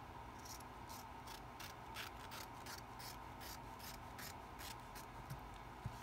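Scissors cutting through fabric in a run of about a dozen quick snips, roughly three a second, followed near the end by a single soft thump.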